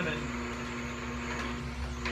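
Green Star Elite twin-gear juicer motor running with a steady hum, ready for the first lemon pieces.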